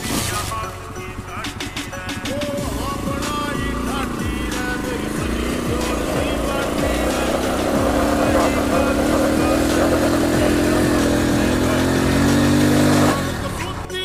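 Motorcycle engine revved hard and held high while a rope tied to a man's neck holds the bike back. It builds from about halfway through, slowly rising in pitch and getting louder, then cuts off suddenly near the end, over background music.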